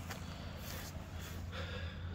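Quiet background with a faint steady low hum and no distinct sound event.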